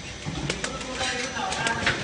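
Plastic cup counting and packing machine running, its mechanism making irregular sharp clicks and clatter over a steady mechanical noise.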